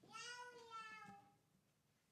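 A faint, high-pitched drawn-out vocal cry about a second long, its pitch rising a little and then sliding down.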